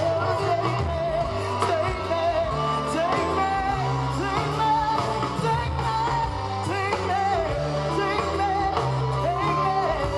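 Live rock band in the heavy Americana style: a woman singing lead over electric guitar, bass guitar and a drum kit.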